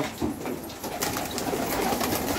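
Domestic pigeons cooing.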